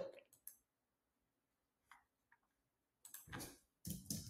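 Near silence broken by a few faint computer mouse clicks, with a slightly louder short noise near the end.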